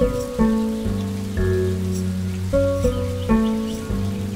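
Slow instrumental music of plucked strings in the manner of a reconstructed ancient lyre: about six low notes struck at uneven intervals, each ringing on until the next.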